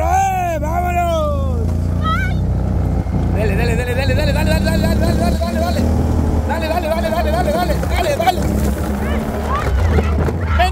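Quad bike (ATV) engine running steadily under way on a dirt track, a constant low rumble, with voices shouting over it.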